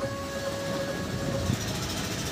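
Steady outdoor background noise, a broad hiss with a low rumble, with a held musical note dying away about one and a half seconds in.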